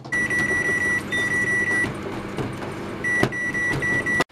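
Microwave oven beeping: two long beeps in the first two seconds, then a quicker run of shorter beeps near the end, over a steady hum.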